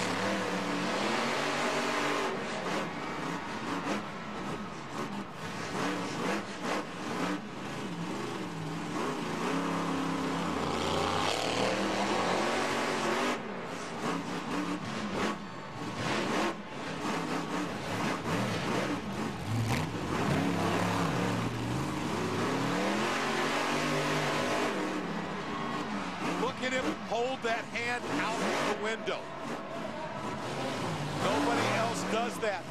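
Maximum Destruction monster truck's supercharged V8 engine revving hard, its pitch sweeping up and down again and again through a freestyle run.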